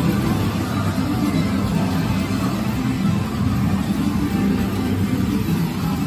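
Loud, steady din of a pachislot hall, with music mixed in, starting abruptly.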